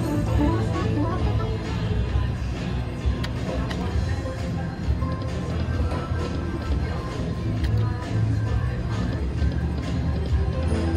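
Huff N' Puff video slot machine playing its jingly game music and spin sounds as the reels turn, a melody of short stepped notes over a steady low hum, with a few sharp clicks.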